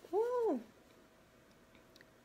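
A domestic cat meows once, a short call that rises and then falls in pitch, about half a second long.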